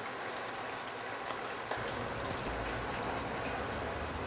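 A pot of water with basmati rice boiling on an electric stove, a steady watery hiss, with a low hum coming in about halfway through.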